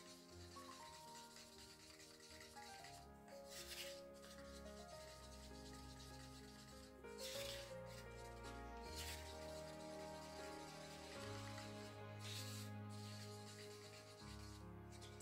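A wooden stir stick scraping around a paper cup as silicone oil is stirred firmly into acrylic paint, faint, with a few louder scrapes spread through. Soft background music of held notes plays underneath.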